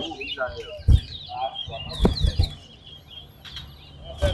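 Caged chestnut-bellied seed finches (towa towa) singing in quick, repeated high twittering phrases, with a few dull thumps about one and two seconds in.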